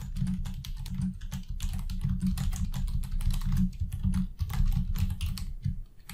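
Fast, continuous typing on a computer keyboard: a dense run of key clicks and thumps with no pauses.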